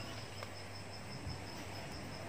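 An insect trilling steadily: a high, evenly pulsing tone, faint, over low background hum.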